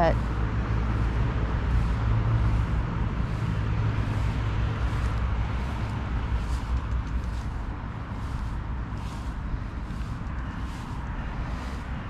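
Steady low outdoor rumble of road traffic and wind on the microphone, easing a little near the end. Faint, evenly spaced footsteps of someone walking run through it.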